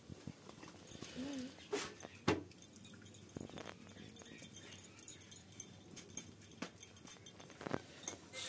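Kitchen handling sounds as hands mix flour in a steel plate: a few sharp knocks and clicks of the plate and bangles, the loudest a little over two seconds in. A short wavering whine about a second in, and a faint high chirping pattern from about two and a half seconds on.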